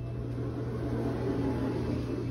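Steady low mechanical hum of room equipment, with soft handling noise over it.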